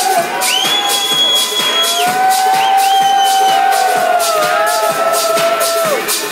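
Electronic dance music from a DJ's live mix over a festival sound system, with a steady beat and long held high notes, and a crowd cheering along.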